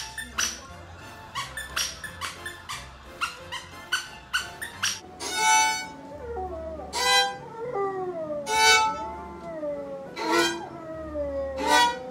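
A dog biting a squeaky toy, a quick run of short sharp squeaks. About five seconds in, a violin plays while a dog howls along in several long, wavering howls.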